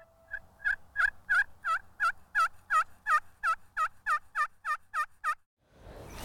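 A turkey yelping: a long, even series of about fifteen calls, about three a second, starting faint and ending about five seconds in.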